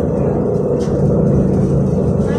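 Inside a Sinara 6254.00 trolleybus on the move: steady road rumble with a low, steady hum from the electric drive.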